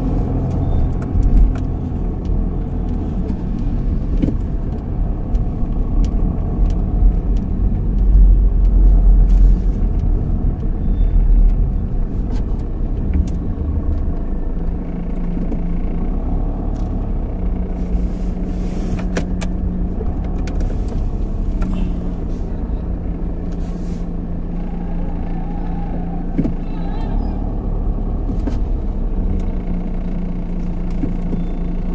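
Car driving slowly in city traffic, heard from inside the cabin: a steady low engine and road rumble, loudest about eight to twelve seconds in, with a level engine hum in the second half.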